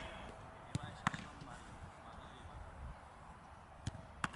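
A football being struck: three short, sharp knocks, the first two close together about a second in and the third near the end.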